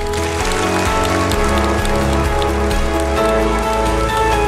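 Audience applauding over background music with sustained notes and a steady bass.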